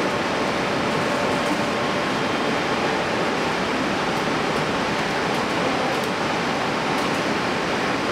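Steady, even rushing noise of ventilation and machinery in an underground particle-detector cavern, with faint hum tones beneath it.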